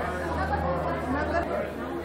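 Indistinct chatter of many overlapping voices in a large, busy room, over a steady low hum that stops about one and a half seconds in.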